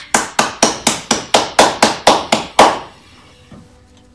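One person clapping hands: about a dozen sharp claps at roughly four a second, stopping a little under three seconds in.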